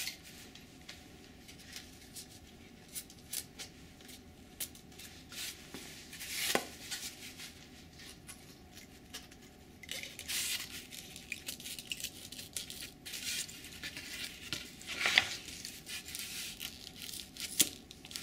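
Foam wing halves being handled and pushed together on wooden skewer pins for a test fit: scattered light scrapes and rubs of foam on foam and on the bench top. There are two louder knocks, about six and fifteen seconds in.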